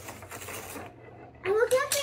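Toy knife sawing at a wooden play log: a short rasping scrape in the first second.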